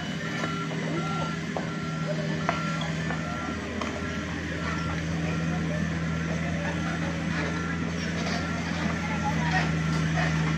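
Komatsu mini excavator running, its diesel engine note strengthening a few seconds in, with its travel/motion alarm beeping in a steady repeating run as the machine moves. Sharp knocks of hand tools on paving blocks are scattered through.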